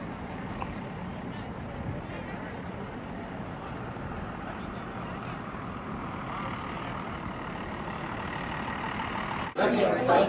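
Steady outdoor background noise of a street and a distant crowd, with faint voices in it. Near the end it cuts abruptly to louder, close-by voices.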